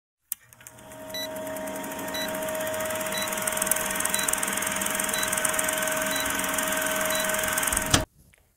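Vintage film-countdown sound effect: a film projector running with a fast fine rattle and a steady hum, and a short high beep once a second, seven beeps in all. It fades in over the first second and cuts off suddenly at the end.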